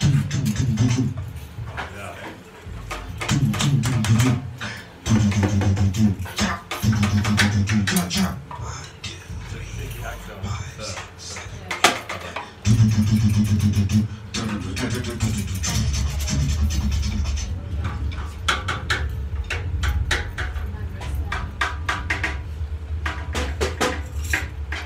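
A samba-enredo sung by a man's voice in phrases, with a steadier low backing from about two-thirds of the way in. Scattered metallic jingles and clicks come from percussion instruments being handled.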